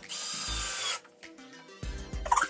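Power drill running in one burst of about a second against a wooden framing stud, over background music.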